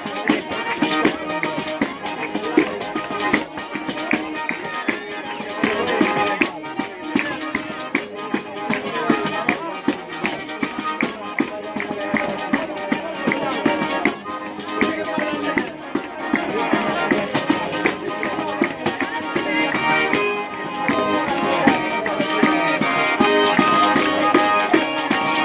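Tarantella played on a small diatonic button accordion (organetto) with a tamburello frame drum beating a steady rhythm, its jingles ringing on each stroke.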